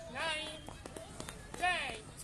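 Two short, high-pitched shouts from people's voices, one early and one near the end, with a few light taps between them.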